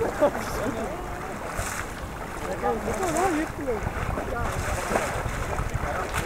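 Wind buffeting the microphone beside open water, with people's voices calling out twice, once near the start and again a few seconds in.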